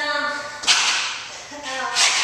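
A woman breathing hard while exercising in a plank: short voiced grunts alternate with forceful, breathy exhalations, about one every second and a half.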